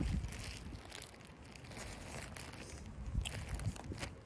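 Faint rustling of a stretchy fabric arm sleeve being unfolded and handled.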